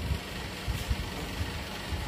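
A low, uneven background rumble with soft thumps.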